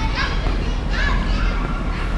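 Children's high-pitched voices calling and shouting at play, in short arching cries, over a steady low rumble.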